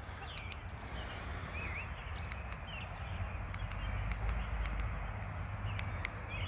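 Outdoor ambience: wind rumbling on the microphone, with a few short bird chirps.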